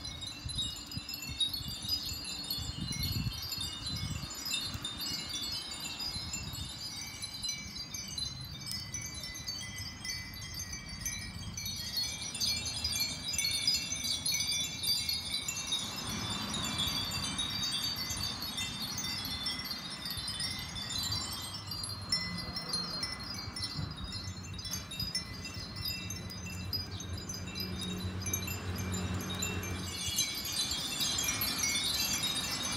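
Dozens of Japanese furin wind bells tinkling in the breeze, a dense, continuous wash of overlapping high, light rings. A faint low hum sits underneath in the second half.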